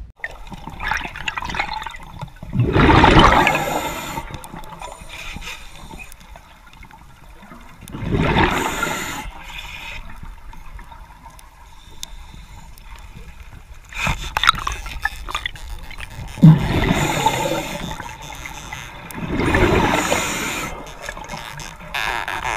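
Underwater recording of a scuba diver's exhaled air bubbles, coming in noisy bubbling bursts every four to six seconds with each breath, with a few sharp clicks between them.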